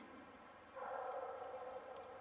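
Faint, steady chorus of many sled dogs howling together in the distance, coming in just under a second in.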